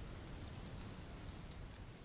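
Faint, even rain-like hiss with light scattered crackle, beginning to fade near the end.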